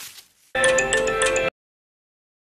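A short electronic musical jingle, about a second long, with several steady ringtone-like tones; it starts about half a second in and cuts off suddenly.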